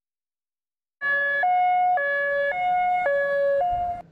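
Ambulance siren sounding a two-tone hi-lo pattern, switching between two pitches about twice a second. It starts suddenly about a second in.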